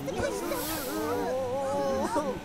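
Several cartoon character voices making wordless strained sounds, layered over background music.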